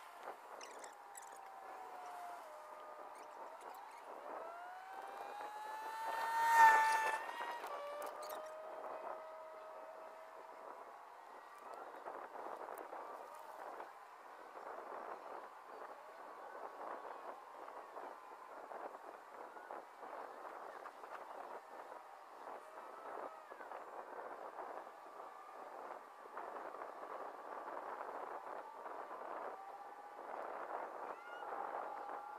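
A motor vehicle going past, its engine note rising to a loud peak about six seconds in, then dropping in pitch and fading, over a steady background rush.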